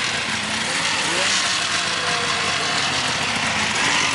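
Snowmobile engines idling, a steady running drone, with faint voices in the background.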